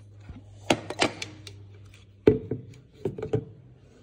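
Hard knocks and clicks of kitchen things being handled on a counter while a blender is got out, with one louder thunk a little past two seconds in.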